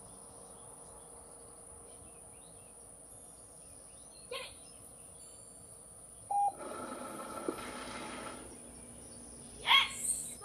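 Treat & Train remote treat dispenser giving a short beep about six seconds in, then its motor whirring for about two seconds as it dispenses a treat. A short, loud call that bends in pitch comes near the end.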